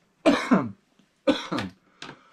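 A man coughing twice. Each cough is a quick double burst, and the two come about a second apart.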